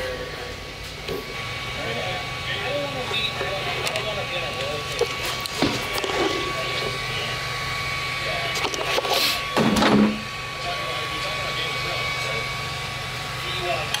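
Faint background conversation over a steady low hum and a thin steady whine. A single brief, loud rushing burst comes about nine and a half seconds in.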